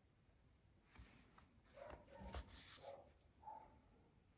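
Near silence: room tone, with a few faint short sounds around the middle.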